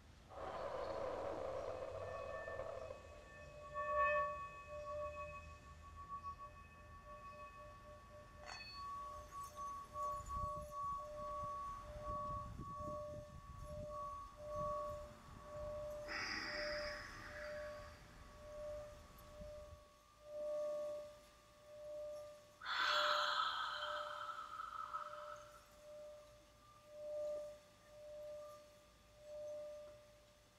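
Tibetan singing bowl ringing with a long sustained tone that pulses in loudness. A few short swells of brighter, hissy sound rise over it at the start, around the middle and again about three quarters through.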